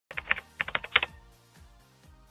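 A keyboard-typing sound effect: a quick run of about ten sharp key clicks in the first second, then a soft music beat comes in at about two beats a second.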